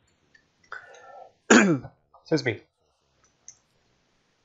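A man coughs to clear his throat, a rough burst about a second and a half in, then says "excuse me". A faint click near the end.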